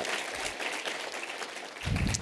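Audience applauding in a large hall, dying away gradually, with a short low thump near the end.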